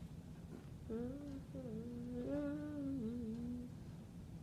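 A child humming a short wordless tune of a few held notes, starting about a second in and stopping shortly before the end.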